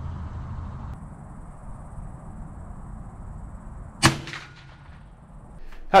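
A single .22 LR shot from a Chiappa Little Badger folding single-shot rifle about four seconds in: one sharp report with a short ring-out, over a low steady rumble.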